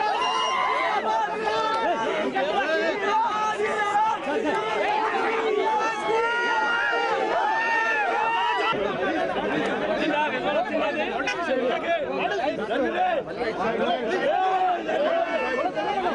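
A crowd of many voices talking and calling out at once, a continuous dense chatter with no single voice standing out.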